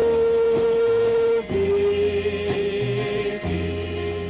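Live Christian worship music from a church band, with long held notes over a steady bass line; the note changes to a slightly lower one about a second and a half in.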